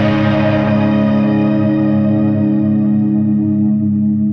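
Background music: a single held chord ringing on, its higher tones fading away as it sustains.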